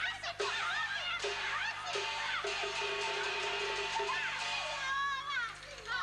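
Teochew opera music: high voices and instruments sliding in pitch, over a lower held note that keeps returning.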